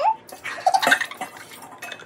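Water poured from a glass measuring cup into a small metal measuring cup and tipped into a stainless steel mixing bowl, with irregular splashes and light clinks of the metal cup against glass and bowl.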